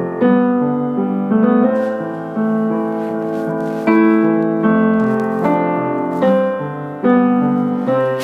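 Piano music: sustained chords, a new one struck roughly every second.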